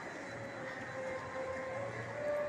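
Indoor shopping-mall background noise: an even wash of diffuse sound with a faint steady hum and a faint held tone underneath.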